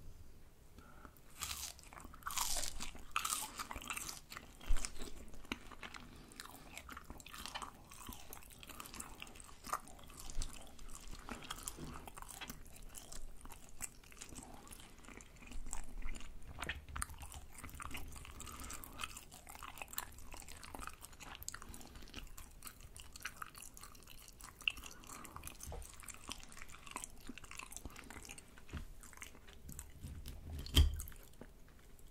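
Close-miked chewing of fried rice-cake sticks (tteok twigim): crunchy bites into the fried crust, then wet, sticky chewing of the rice cake with many small crackles and clicks. The crunch is loudest about two to five seconds in and again around sixteen seconds.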